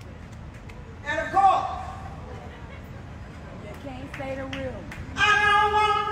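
A woman's voice in two short, wordless phrases, then about five seconds in she starts singing a loud, long held note.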